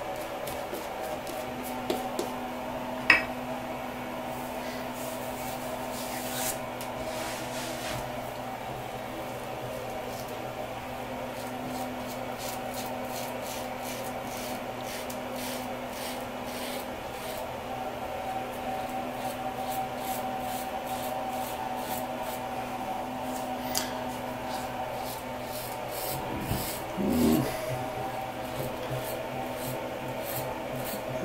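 A Merkur Futur double-edge safety razor with a Zorrik stainless blade scraping through lathered beard stubble in many short, repeated strokes, over a steady low hum. A sharp click comes about three seconds in.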